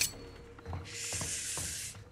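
A couple of soft knocks, then a rushing hiss lasting about a second, over a faint, steady low music note.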